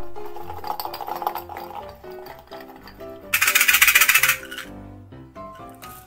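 Background music with a loud, rapid rattling clatter lasting about a second near the middle, from a small glass jar of beads with a metal screw lid being handled.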